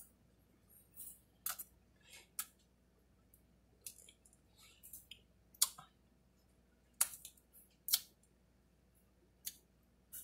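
Close-up mouth sounds of eating a soft-serve ice cream bar on a stick: about a dozen short, wet smacks and clicks of lips and tongue at irregular intervals, the loudest a little past halfway.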